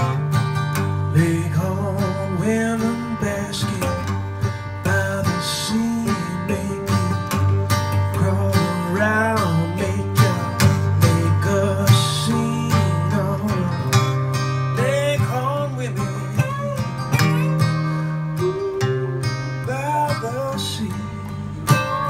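Instrumental blues break: a National steel resonator guitar played with a slide takes a solo, its notes gliding up and down, over an acoustic guitar keeping the rhythm.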